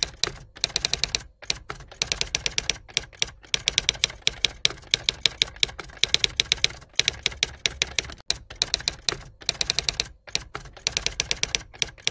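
Typing sound effect: runs of sharp typewriter-style key clicks, about five or six a second, broken by short pauses.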